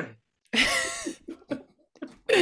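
A single sharp burst from a person's voice, about half a second in, that trails off and is followed by two brief catches of breath.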